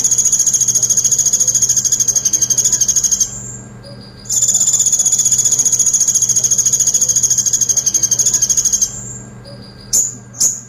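Male purple-throated sunbird (kolibri ninja, 'konin') singing its rapid, high-pitched rattling trill, the 'tembakan pelatuk' song. The trill runs until about three seconds in, pauses briefly, and comes again for about four and a half seconds.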